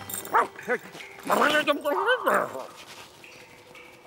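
Cartoon dog vocalizing: two short yips, then a longer whining call that bends up and down in pitch.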